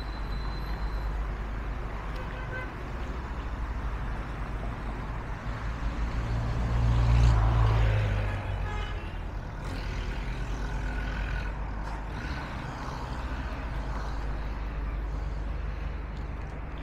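Road traffic on a wide city street: a steady rumble of passing cars, with one heavier vehicle going by close and loudest about seven seconds in.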